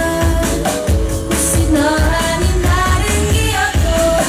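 Live K-pop performance: female vocals sung into handheld microphones over a pop backing track with a steady, pulsing bass beat, played through a PA system.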